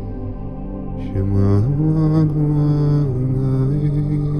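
A man's deep voice chanting long held notes in a mantra-like way over sustained background music. About a second and a half in, the voice slides up to a higher note and holds it.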